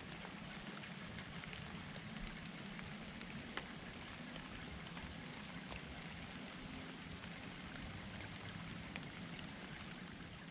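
Faint, steady woodland ambience: an even hiss with a few scattered light ticks.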